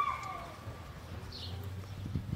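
Quiet outdoor background. A steady high tone dies away with a falling pitch right at the start. A single short bird chirp comes about a second and a half in, over a faint low hum.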